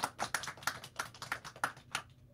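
Quick, irregular tapping of keys on a computer keyboard, about five light clicks a second.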